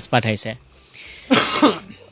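A voice trails off, then after a short pause someone coughs once, about a second and a half in.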